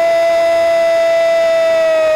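A Brazilian football commentator's drawn-out "Gooool" goal call, one long shout held at a single steady high pitch, announcing a goal.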